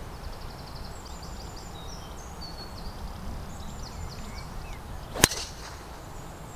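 Birds chirping in the background, then about five seconds in, a single sharp crack as a golf club strikes a teed-up ball on a tee shot.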